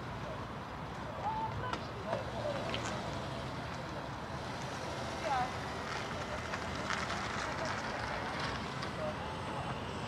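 Car park ambience: a steady low rumble of traffic and wind, with faint, unintelligible voices in the distance.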